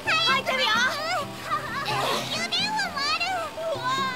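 Excited, high-pitched children's voices exclaiming over light background music.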